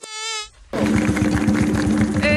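Insect buzzing: a short, high, wavering whine, a brief gap, then a lower, steadier buzz from about three quarters of a second in.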